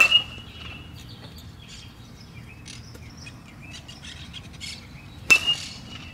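Metal baseball bat striking a ball twice, about five seconds apart, each hit a sharp ping with a brief ring. Birds chirp faintly in between.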